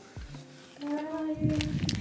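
A woman's voice singing, holding one steady note that starts about a second in after a quiet opening.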